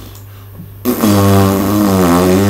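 A man's voice holding one long, steady note, a drawn-out sung or hummed tone, that starts about a second in and lasts about two seconds. A low steady hum runs underneath.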